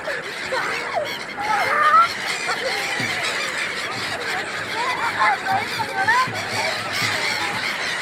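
A large flock of gulls calling, many short overlapping cries throughout, with people's voices faintly underneath.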